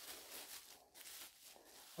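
Faint, uneven rustling of tissue paper being pulled off a doll.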